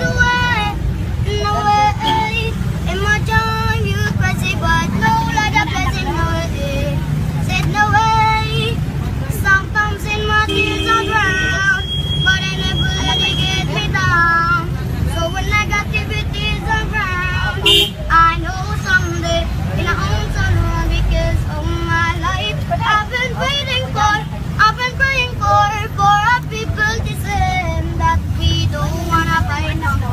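A young boy singing, the low rumble of the moving vehicle he is riding in running steadily underneath.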